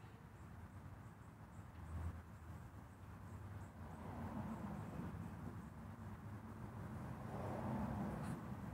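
Small birds chirping in quick, high, faint notes over a low background rumble that grows louder in the second half.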